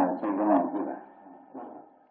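A man speaking in Burmese on an old, narrow-band recording of a monk's sermon; the speech trails off about a second in, with one brief sound near the end.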